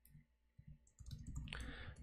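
Faint clicking of computer keyboard keys as text is typed into a code editor, starting about a second in after a near-silent pause.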